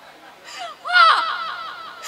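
A woman's loud, anguished cry rising suddenly about a second in, then trailing off in short falling sobs.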